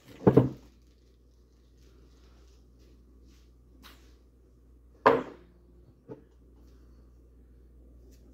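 Two sharp knocks, one just after the start and a louder one about five seconds in, with two fainter taps between and after them, like objects being handled and knocked against a wooden table. A low steady room hum fills the gaps.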